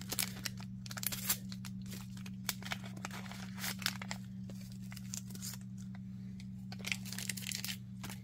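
A Lipton Yellow Label tea-bag sachet being torn open and crinkled by hand: a run of short crackling tears and rustles. They thin out in the middle and pick up again near the end, over a low steady hum.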